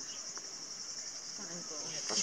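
Cicadas droning in a steady, high-pitched buzz, with a faint voice near the end.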